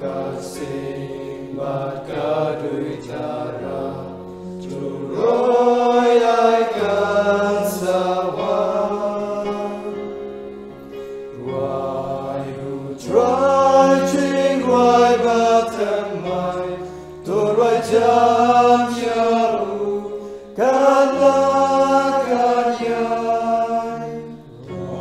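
A hymn sung in Khasi: a singing voice carries the melody in phrases of a few seconds, over held low chords that change every few seconds.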